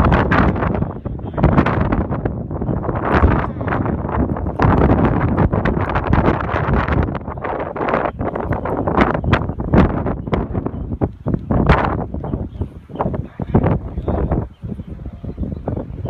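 Wind gusting hard across the microphone, surging and fading irregularly, then easing off near the end.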